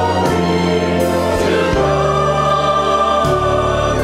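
Mixed choir singing in harmony, holding long chords that change every second or two.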